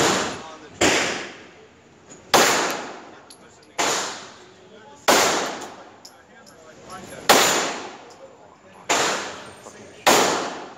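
Glock 17 9mm pistol fired seven times at an uneven pace, one to two seconds between shots, with an eighth shot right at the end. Each shot is followed by a long echoing tail from the enclosed indoor range.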